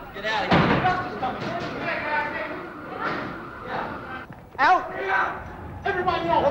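Men shouting over one another in a hard-walled stairwell, with heavy thuds of a door banging. A loud shout breaks out about four and a half seconds in.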